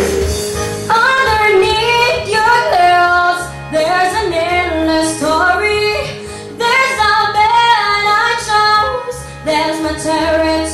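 A woman singing a pop ballad into a handheld microphone over backing music, her voice coming in about a second in with gliding, ornamented notes.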